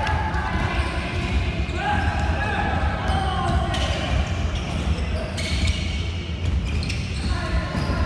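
Basketball bouncing on a hardwood gym floor during play, with scattered thuds and players' calls echoing in the large hall.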